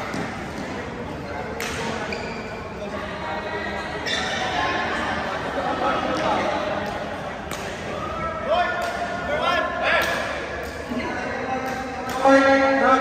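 Sharp pops of badminton rackets striking a shuttlecock every second or two, with voices echoing in a large sports hall.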